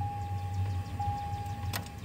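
A steady high-pitched electronic tone over a low hum, inside a pickup cab with the ignition on and the engine not running. The tone gets slightly louder about a second in.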